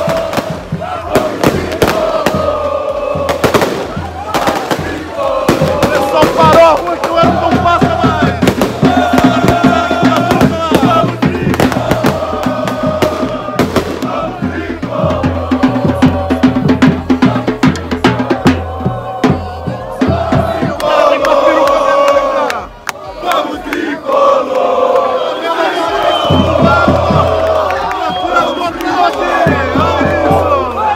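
Crowd of football supporters singing a chant together, backed by bass drums beating a steady rhythm, with many sharp hits and bangs through it. The singing dips briefly about two thirds of the way in, then picks up again.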